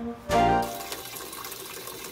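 A short run of background music ends about half a second in. Then comes a steady hiss of running water, like water being sprayed over potted herbs.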